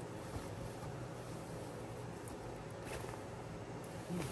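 Quiet room tone: a steady low hum with a faint, brief rustle about three seconds in, as a cotton bedsheet is handled.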